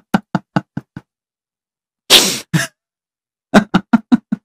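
A man laughing in quick 'ha-ha-ha' bursts, about five a second, that trail off. A sharp, noisy intake of breath about two seconds in, then a second run of laughter near the end.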